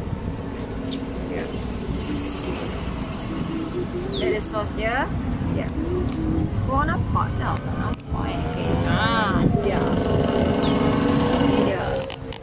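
People talking in the background over a continuous low rumble.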